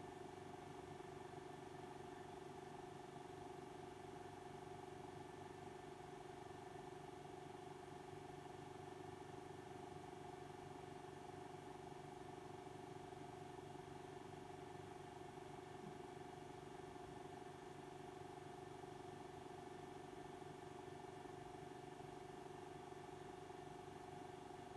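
Very quiet, steady low hum made of several fixed tones, unchanging throughout: room tone with nothing else standing out.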